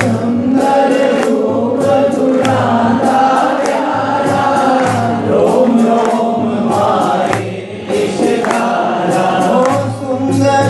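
A devotional bhajan to Sai Baba: voices singing a melody over instrumental backing, with a regular low drumbeat and light percussion ticks.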